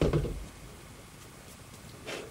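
A dull thump at the start, then a few faint clicks as a clear plastic part is handled in the hands. After that only quiet room tone.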